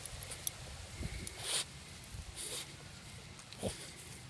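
A Boston Terrier sniffing closely at something on the ground: a few short, breathy sniffs spread through the moment.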